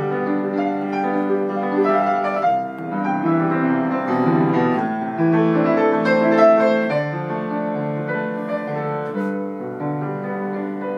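Grand piano played solo, a continuous flowing passage of many overlapping notes, mostly in the middle and lower-middle range.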